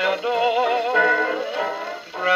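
A 1930 78 rpm record playing on an HMV 102 wind-up portable gramophone, heard acoustically through its soundbox: a band's melody held with strong vibrato, thin in the treble.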